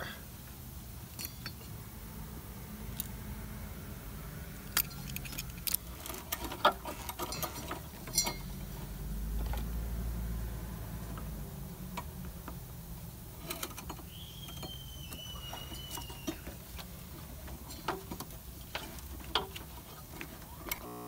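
Scattered clicks and light rattles of rubber vacuum lines being wiggled and pulled off a plastic Nissan evap charcoal canister by hand, over a low steady hum. A thin high squeak lasts about two seconds just past the middle.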